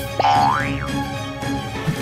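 Background music with a comic cartoon sound effect near the start: a tone that slides up in pitch and then quickly drops back.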